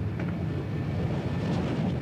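Douglas A-1 Skyraider ("Spad") piston-engine prop plane running as it taxis on a carrier flight deck after landing: a steady low engine rumble mixed with wind noise.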